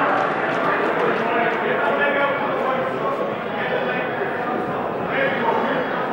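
Hubbub of many overlapping voices in a large, echoing sports hall, with no single voice standing out.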